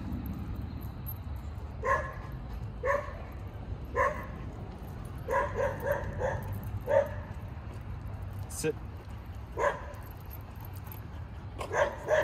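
A dog barking in short sharp barks, single ones about a second apart with a quick run of four about five seconds in, then a last bark near the end.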